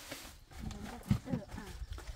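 Faint voices talking, with rustling and a single knock as woven plastic feed sacks are handled.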